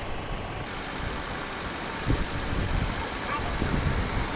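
Iveco coach bus running as it drives up and pulls in to the stop, against street traffic noise; its rumble grows a little louder as it comes close in the second half.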